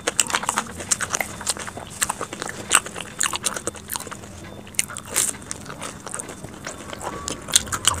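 Close-miked chewing and crunching of crispy fried samosa, played at double speed, a dense irregular run of sharp crackles and clicks.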